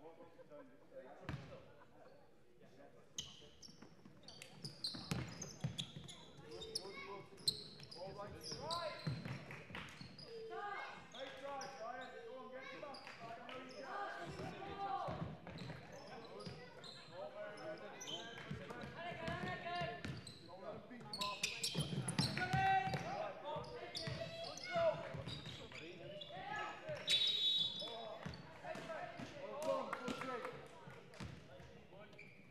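Basketball bouncing on a wooden sports-hall floor during live play, with sharp irregular thuds among indistinct shouting and talk from players and spectators, all echoing in the large hall.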